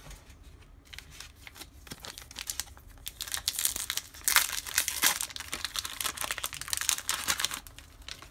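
Light clicks of a stack of trading cards being handled, then from about three seconds in the foil wrapper of a Bowman baseball card pack being torn open and crinkled.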